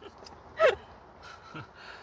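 A person's short gasp-like exclamation: one brief voice sound falling in pitch about two-thirds of a second in, with faint rustling and small clicks around it.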